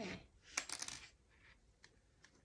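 A quick cluster of light clicks and paper crackle about half a second in, as the sewing needle is set down on the table and the stitched book-page booklet is handled, with one faint tick near the end.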